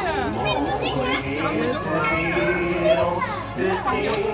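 Young children's voices chattering and calling out over one another, high-pitched.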